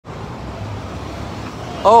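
Steady city street noise, a low hum of traffic, with a person exclaiming "Oh" near the end.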